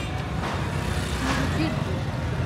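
Busy street ambience: a steady low rumble of vehicle traffic under scattered background voices.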